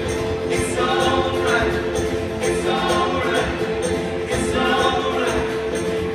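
Live acoustic folk band playing a quick song: voices singing together over strummed acoustic guitars and an upright bass.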